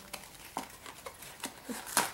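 Small plastic toy package being opened by hand, with a handful of short crinkles and taps scattered through the moment.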